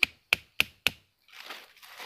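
Four quick, sharp knocks about a third of a second apart, like a hard tool striking wood, followed by rustling in dry leaf litter as the ground is worked by hand.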